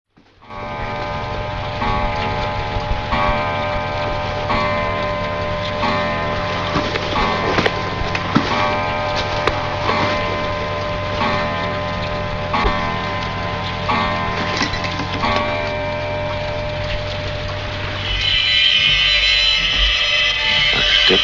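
Film soundtrack: a sustained low drone under stacked tones that pulse about every second and a half, ticking like a clock. It grows brighter and louder about two seconds before the end.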